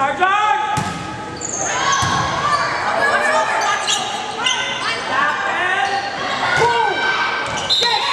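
Volleyball rally in a gymnasium: sharp ball hits and shoe squeaks on the court floor over crowd voices, echoing in the large hall.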